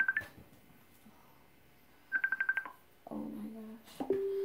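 Rapid electronic beeping on one high pitch, about a dozen beeps a second in bursts of about half a second: the end of one burst at the very start and a second burst about two seconds in, like a phone or device alert going off.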